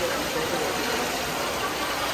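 Steady rush of water in a large indoor pool hall, an even noise without breaks, with faint voices in the background.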